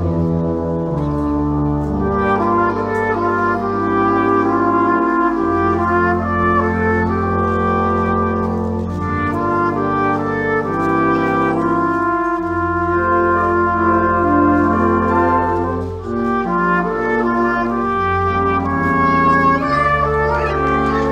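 Russian horn orchestra playing: long straight brass horns, each sounding a single note, combine into a slow progression of sustained, overlapping chords, with a brief drop about sixteen seconds in.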